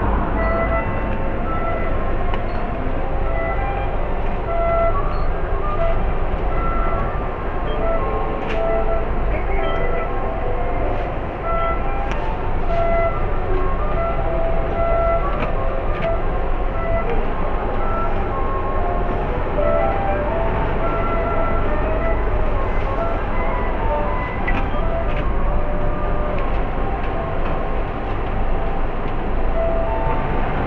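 Shop ambience picked up by the built-in microphone of cheap spy-camera glasses: a steady low rumbling noise, with short melodic notes of background music running through it and a few faint clicks.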